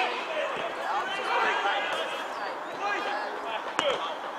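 Players and a few spectators shouting and calling out across an open football pitch, with a sharp thud of the football being struck near the end.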